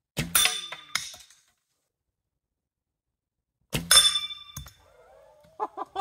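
Cedar arrows shot from a traditional bow hitting steel pistol targets: two sharp metallic clangs, each ringing briefly, about three and a half seconds apart.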